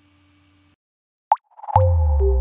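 A faint hum cuts off, then a single short plop sound effect, a quick rising pitch blip, about a second in. Near the end a swell leads into a heavy bass hit that opens a music sting.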